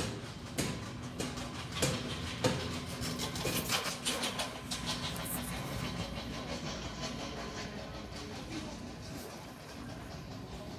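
A rattling, rolling clatter with sharp clicks about every half second over the first four seconds, then a steadier rumble.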